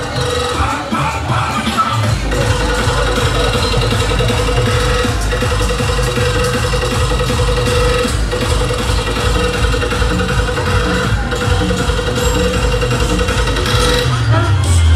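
Loud dance music played over a truck-mounted DJ sound system. A pulsing synth tone runs over heavy bass, which comes in about two seconds in.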